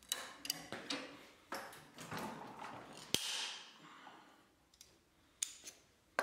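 Hardened table saw blade steel clamped in a bench vise, bent with locking pliers. The pliers click and scrape on the metal, then about three seconds in the blade breaks cleanly with a single sharp snap and a brief high ring, the sign that the steel was hardened. A few light metal clicks follow near the end.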